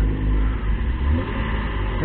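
A motor vehicle engine running, heard as a steady low rumble that eases a little after about a second, with a faint rise in pitch near the middle.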